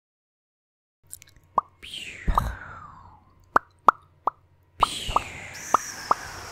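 Mouth sounds imitating fireworks, close to the microphone: a string of sharp lip and tongue pops mixed with whooshes that fall in pitch, like rockets going up and bursting. It starts about a second in, after silence.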